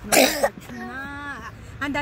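A person clears their throat once, short and loud, near the start, followed by a brief voiced sound.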